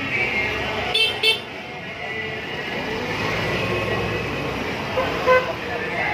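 Vehicle horns honking in two quick double beeps, a higher-pitched pair about a second in and a lower-pitched pair near the end, over steady street traffic and crowd noise.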